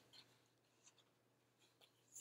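Near silence, with faint soft paper sounds of a picture-book page being turned.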